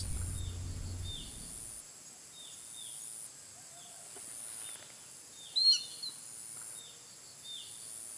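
Lakeside wetland ambience: a steady high insect drone runs under a string of short, repeated chirps, and one louder bird call comes a little past halfway.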